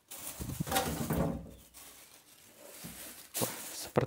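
Clear plastic wrapping rustling and crinkling as it is pulled off a PC case, loudest in the first second and a half, then a single sharp click near the end.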